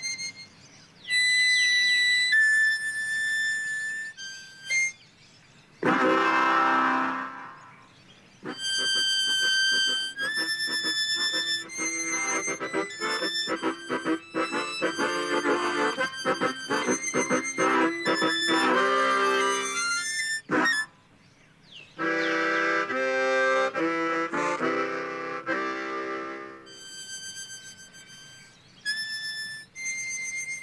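Harmonicas playing in short phrases with brief breaks between them. Thin, high single notes at the start and near the end alternate with fuller, lower chords in the middle.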